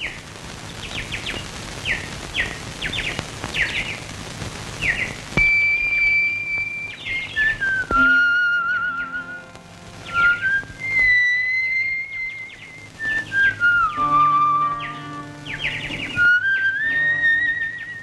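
Opening of an old Indian film song: short bird-call chirps over a steady hiss, then from about five seconds in a high whistled melody with a slight waver, gliding from note to note over a soft instrumental accompaniment.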